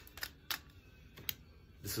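A few light, unevenly spaced clicks and taps from a dry, scraped tulsi twig being handled in the fingers.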